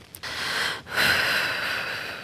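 A woman's shaky, heavy breathing while crying: two long breaths, the second longer, with no voice in them.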